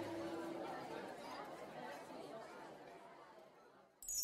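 Faint murmur of indistinct voices, fading away to silence just before the end.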